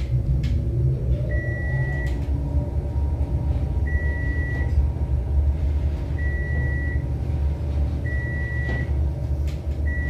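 A 1991 Dover traction elevator car travelling downward: a steady low rumble of the ride, with a faint whine rising as the car picks up speed about a second in. Five short, high beeps about two seconds apart, one for each floor the car passes on its way down.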